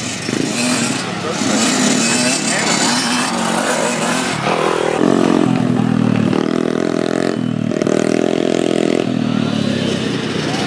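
Small dirt bike engines revving as young riders pass. They rev up and down several times, with short breaks between revs, from about halfway through.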